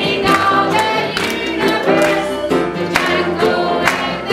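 Children and adults singing a gospel song together in unison, with instrumental accompaniment and a steady beat about twice a second.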